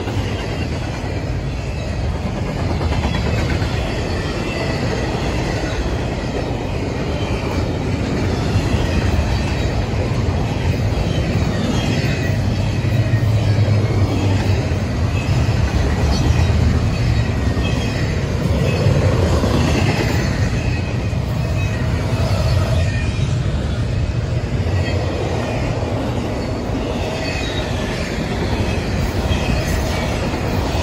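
Double-stack intermodal container train passing at about 50 mph: a steady rumble of the well cars' wheels on the rails, with faint thin high tones from the wheels.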